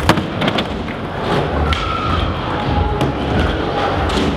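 Skateboard landing a flip trick with one sharp, loud smack just after the start, then its wheels rolling on a smooth concrete floor. A few fainter board clicks follow later.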